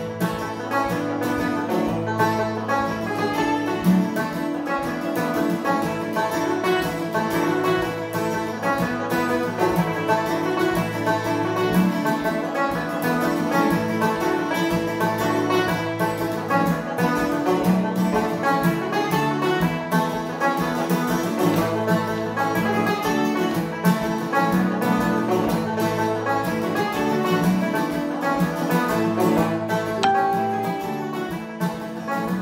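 Banjo picking a fast Irish traditional tune, note by note, with acoustic guitar chord backing, played through without a break at a steady, even level.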